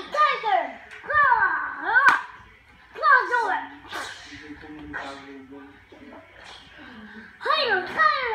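A young child making wordless, high-pitched vocal play noises whose pitch swoops steeply up and down, several in a row with a pause in the middle and another near the end: pretend-fighting sound effects. A couple of sharp clicks or slaps come through between them.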